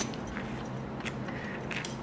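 Quiet handling sounds over a low steady hum: a few faint light ticks and rustles as hands pull a piece of soft, spongy cake apart over a plate.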